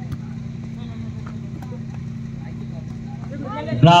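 Outdoor volleyball rally: a single sharp knock of the ball being struck right at the start, over a steady low electrical hum and faint crowd noise.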